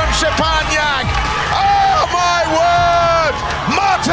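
Loud shouted or sung vocals, with long held notes, over background music and crowd noise.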